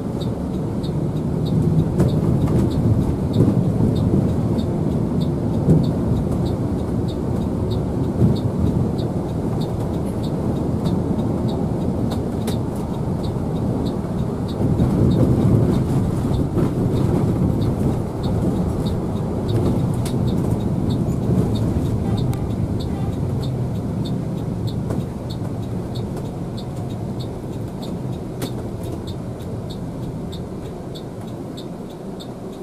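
Engine and road rumble of a coach heard from inside its cab while driving, with a few short knocks in the first several seconds. A faint, regular light ticking runs underneath.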